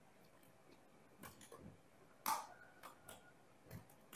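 Faint computer keyboard keystrokes: about half a dozen separate key clicks, the loudest a little past halfway, as a line of code is typed.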